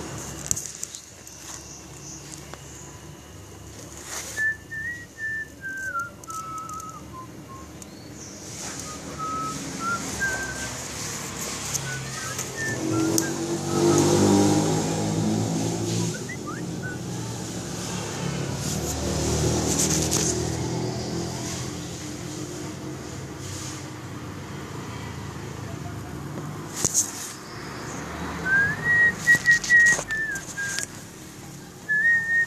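Short whistled phrases in stepping notes, near the start and again at the end. In the middle a low rumbling sound, engine-like, swells and fades twice.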